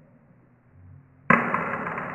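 A sudden loud impact a little over a second in, its sound fading away slowly over the following second or more.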